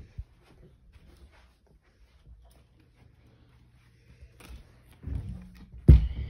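Quiet room with faint rustles and clicks from a handheld phone camera being moved, then a dull thump about five seconds in and a single sharp, loud knock just before the end.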